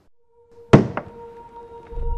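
A loud single knock, followed about a third of a second later by a lighter second knock. A steady held music tone comes in just before them.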